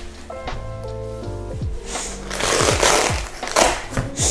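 Background music with held notes, then a loud rustling, scraping noise about halfway through as the light box's fabric folio case is pulled open.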